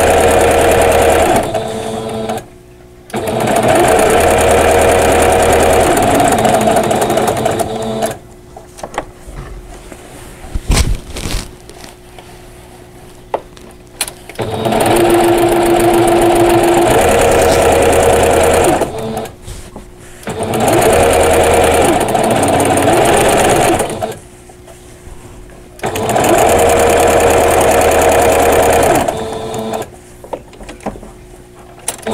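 Singer domestic sewing machine running in stretches of a few seconds with short pauses between, sewing a long basting stitch through a quilt with a walking foot. A longer pause near the middle holds a few light knocks and handling sounds.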